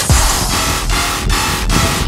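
Electronic music soundtrack with a heavy, pitch-dropping bass and a steady beat.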